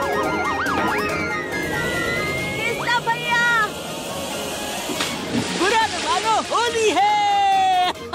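Cartoon soundtrack: background music under characters' wavering cries and yelps, with a splashing water sound effect in the middle and a long held cry near the end.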